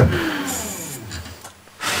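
Turning tool cutting the spinning wood of a small turned box on a wood lathe. The cutting noise fades over the first second and a half, then comes back as a short, louder burst of cutting near the end.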